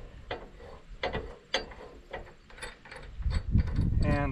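Irregular metallic clicks and clanks from a homemade fence-wire winder mounted on the front of a lawn tractor as its parts are handled and fitted by hand. The sharpest click comes about a second and a half in.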